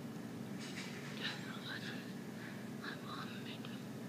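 A woman whispering or mouthing softly: breathy, toneless voice sounds in short patches, over a steady low room hum.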